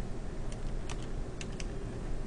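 Computer keyboard being typed on: a few separate key clicks, spaced unevenly across the two seconds.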